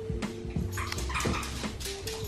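A dog whining in a thin, steady tone while its claws click on a hard floor as it runs up, over soft background music.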